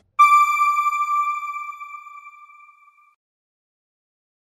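A single electronic chime sounds once as the TV channel's logo ident, then rings out and fades away over about three seconds.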